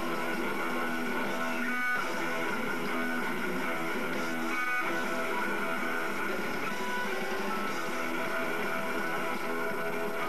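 Punk band playing live, electric guitars and drums, heard thin with very little bass.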